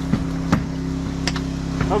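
A steady low machine hum runs throughout, with four short sharp clicks and knocks from equipment being handled.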